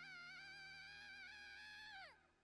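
Very faint: a young girl's anime voice holding one long, high wailing cry for her father, its pitch wavering slightly.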